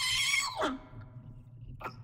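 High-pitched, chipmunk-style voice from a voice-changer app drawn out into a wordless squeal, falling away about half a second in. After that only a faint low hum, until a short vocal sound begins near the end.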